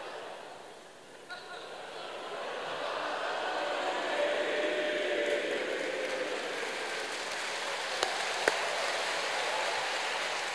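A large theatre audience laughing and applauding at a joke, swelling over the first few seconds and then holding steady. Two sharp clicks come near the end.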